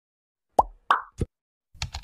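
Intro-animation sound effects: three quick plops in a row, each with a brief pitch glide, then a rapid patter of clicks like keyboard typing near the end as the search bar text is typed in.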